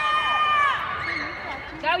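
Supporters yelling long, drawn-out, high-pitched cheers of encouragement, several voices overlapping, with a shout of "Go" near the end.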